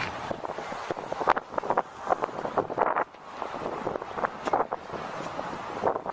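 Wind buffeting a handheld camera's microphone outdoors, in irregular gusts over a steady outdoor rumble.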